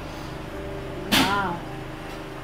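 Soft background music with held notes. About a second in comes a single short, breathy vocal sound, a half-second catch of breath with voice in it, from a tearful girl.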